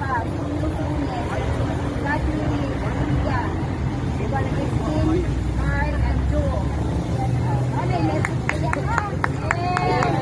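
Several people talking over one another outdoors, over a steady low traffic rumble. A quick run of sharp clicks or taps comes near the end.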